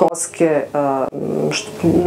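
A woman talking, her speech drawing out into a long, rough-sounding vowel in the second half.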